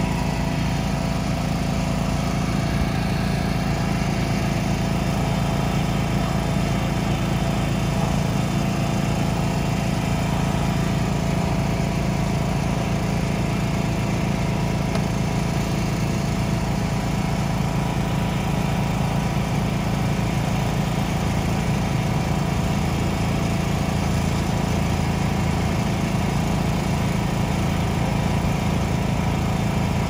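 An engine running steadily at constant speed, a loud, unchanging drone.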